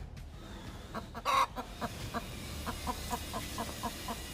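A hen clucking: one louder call about a second in, then a rapid run of short clucks, several a second. She is crouched over her ducklings, guarding them from an approaching cobra.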